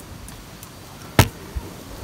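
A single sharp knock a little over a second in, with a few faint ticks before it and a soft low thud just after, over a quiet steady background: the knocks of someone climbing about in a tree.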